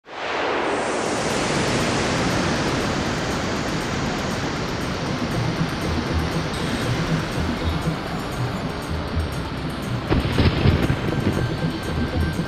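Intro sting for an animated logo: a loud rushing whoosh of noise that slowly fades, with a low pulsing beat coming in about halfway and a sharp hit near the end.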